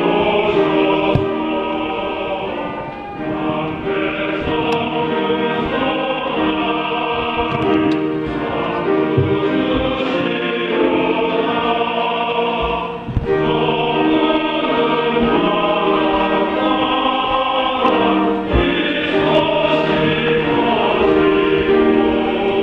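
Men's choir singing a hymn in parts, with trumpet and piano accompaniment, in held, sustained phrases with brief breaths between them about 3 and 13 seconds in.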